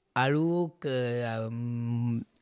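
A man's voice drawing out a word, then holding one long sound at a nearly level pitch for over a second, like a spoken hesitation stretched out.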